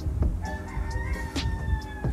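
A single long, held pitched note from the documentary's soundtrack, starting about half a second in and lasting about a second and a half with a slight rise in the middle, over a steady low drone.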